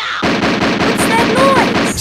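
A cartoon shotgun blast repeated in a rapid, even stutter, like machine-gun fire. It starts a moment in and keeps going, with a short vocal glide over it near the middle.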